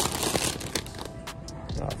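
Plastic chip bag crinkling as it is grabbed off the shelf and handled: a loud burst of crinkling at first, then lighter rustles.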